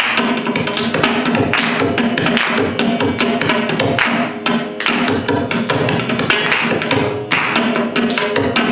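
Mridangam played with quick, dense hand strokes in Carnatic rhythm, over a steady drone.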